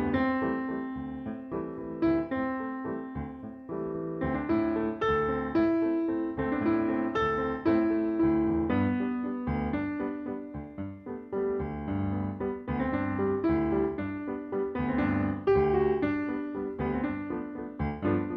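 Solo piano music, a lively run of struck notes over lower accompanying notes, playing as the soundtrack to silent film footage.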